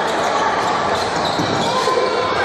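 A basketball being dribbled on a hardwood court, with players' and spectators' voices echoing in a large gym.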